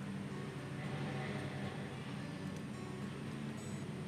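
A steady low hum under faint background noise, with no distinct event.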